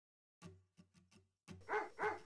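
A dog barking: a few short, soft barks, then a louder, longer bark near the end.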